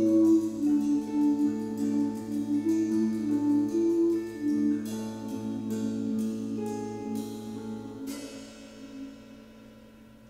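Jazz combo of archtop electric guitar and drum kit playing the closing bars of a tune. A last cymbal stroke about eight seconds in rings out, and the music fades away near the end.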